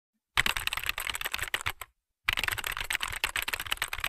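Rapid computer-keyboard typing clicks in two runs of about a second and a half each, with a short pause between.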